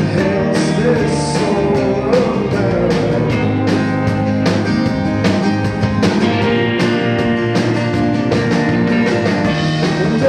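A live rock band playing a song with a steady drum beat and an acoustic guitar, and a man singing into the microphone.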